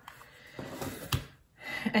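A single sharp click about a second in against faint room noise, then a woman starts speaking near the end.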